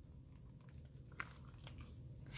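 Faint rustle and a few light ticks from a hardcover picture book's cover and jacket being swung open, over quiet room tone.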